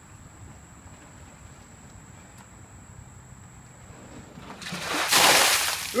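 Ice water dumped from a plastic storage tote over a person: about four and a half seconds in, a rush of water and ice cubes splashing onto him and the pavement builds to a loud splash that lasts about a second and a half.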